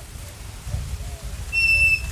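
Low rumbling background noise with a few faint short calls, then a high, steady whistled note held for about half a second near the end.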